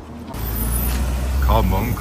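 A motor vehicle's engine running with a steady low rumble, and a man's voice starting in over it near the end.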